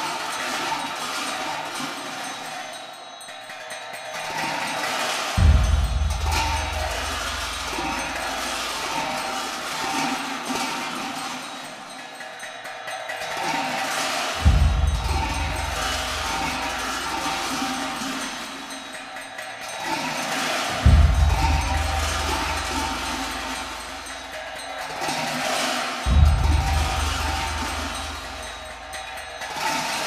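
Tibetan Buddhist monastic ritual music: a steady mid-pitched tone with loud metallic percussion clashing four times at uneven intervals, each clash followed by a deep low drone lasting several seconds.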